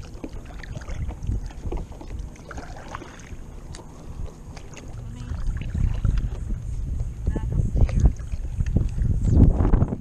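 Wind rumbling on a chest-mounted action camera's microphone, louder from about halfway through, with the splashes and drips of stand-up paddle strokes in calm water.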